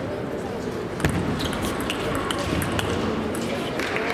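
Table tennis ball knocks: one sharp click about a second in, then a run of lighter, irregular ball taps, over a background of voices chattering in the hall.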